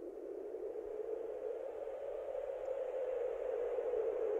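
Opening of a grunge-rock track: a hazy noise pad, strongest in the low-middle range, swelling slowly louder with no beat or melody yet.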